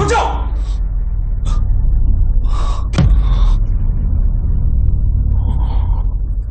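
A low, steady rumbling drone of a tense film score, with a few short breathy noises and a sharp click about three seconds in.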